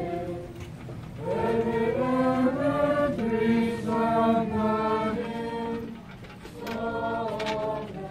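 A group of people singing a slow hymn together, holding long notes that step from one pitch to the next.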